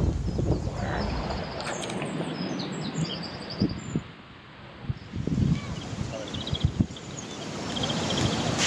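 Wind rumbling on the microphone outdoors, with small birds chirping and a short rapid trill near the end. A few soft knocks come after a brief drop in level about halfway.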